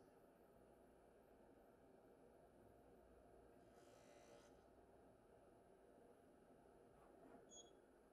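Near silence: faint room tone, with a faint brief hiss about four seconds in.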